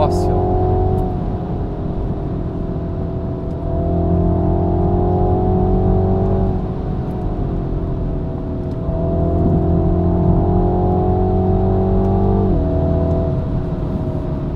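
Mini John Cooper Works' turbocharged 2.0-litre four-cylinder engine, heard from inside the cabin, pulling under load. It climbs slowly in pitch in two long stretches, each ending in a sudden drop in pitch and level.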